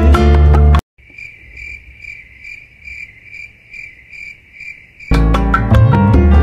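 Cuban son music with guitar and singing cuts off abruptly about a second in. In the gap a cricket chirps in a steady run of about two and a half chirps a second, until the music comes back about five seconds in.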